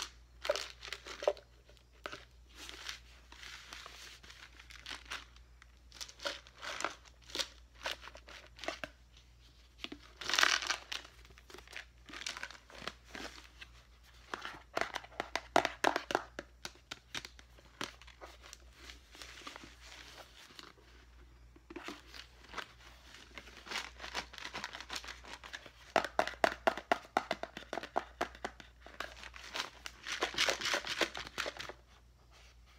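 Clear plastic tub holding glitter foam letters and buttons being tipped and turned by hand, its contents tumbling and clicking against the plastic walls in bursts, the loudest about ten seconds in and again near the end.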